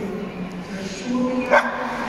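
A dog gives a single short, sharp yap about one and a half seconds in, the loudest sound here, over a steady background of music and voices.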